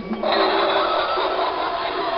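A steady rushing noise, like blowing air, starts suddenly about a quarter second in and holds evenly.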